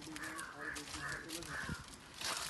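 A bird calling four times in quick succession, each call short and harsh, over men talking in low voices.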